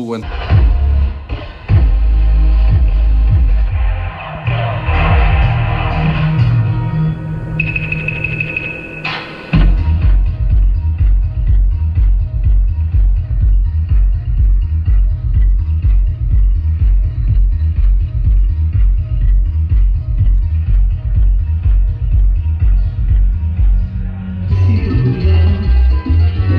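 Music played loud through a DJ PA system, dominated by heavy bass with a steady pulsing beat and little treble: the speakers' tweeters are blown. A brief steady high tone sounds about eight seconds in.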